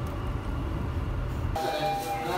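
Steady low rumble of a Keikyu local train running, heard from inside the passenger car. About a second and a half in, the rumble cuts off abruptly and a steady high tone with other faint sounds takes its place.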